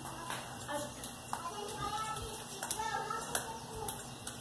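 Faint, distant children's voices in short snatches, with a few sharp taps or clicks in the second half.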